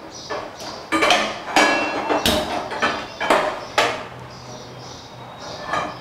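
Kitchen clatter of metal cookware and utensils on a gas stove: a quick series of knocks and clanks, some ringing briefly, bunched in the first four seconds, with one more knock near the end.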